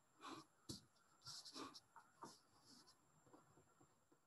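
Pen writing on lined paper: faint, short scratching strokes, several in the first three seconds, growing sparse towards the end.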